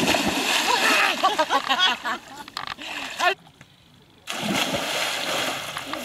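Loud water splashing as a swimmer thrashes in a lake, with voices over it. After a brief lull about three seconds in, there is a second burst of splashing as someone plunges into the water.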